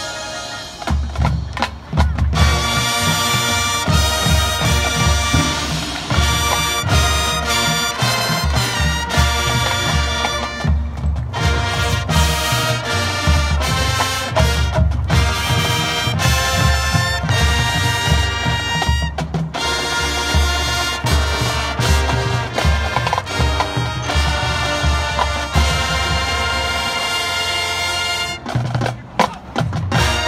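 High school marching band playing: massed brass over a drumline and front-ensemble mallet percussion, loud throughout with heavy accented drum hits. It swells in about two seconds in, and stops briefly twice, near the middle and just before the end.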